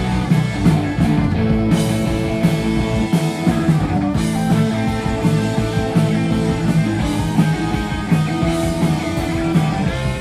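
Live punk band playing loud and without a break: electric guitar chords held over bass and drums, heard from within the crowd.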